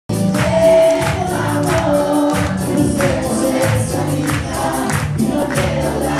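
Live band music heard loud from within the audience: a singing voice over a steady percussion beat of about three hits a second.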